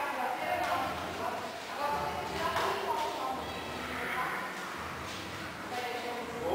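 Indistinct voices talking in a large echoing hall, with a few light knocks or footfalls on the foam mats.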